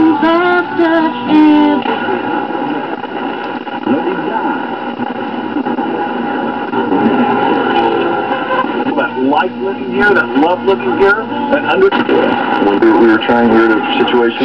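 AM broadcast audio from a 1972–74 Chrysler E-body car radio's speaker as the dial is tuned across stations: music for the first couple of seconds, then a noisier, garbled stretch, then a man talking on another station.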